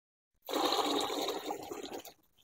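Water gushing from the outlet hose of a 12 V DC bilge pump into a plastic bucket. It starts suddenly about half a second in, is loudest for the next second, then eases a little.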